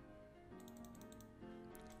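Near silence: faint background music, with a run of faint quick computer clicks over most of the second.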